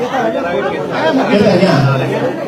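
Speech only: a man talking into a handheld microphone in a large hall, with other people chattering around him.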